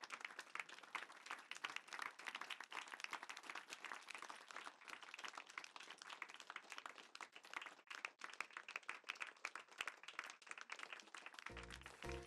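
An audience giving a standing ovation, heard faintly as a dense, even patter of clapping. Near the end, music starts.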